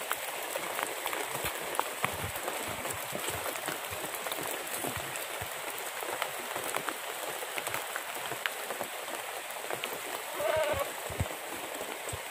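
Steady light rain falling on leaves and the ground, with many small scattered drips and ticks. A short, faint call comes about ten seconds in.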